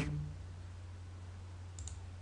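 Quiet room tone with a low steady hum, then a couple of faint computer-mouse clicks near the end as a taskbar icon is clicked.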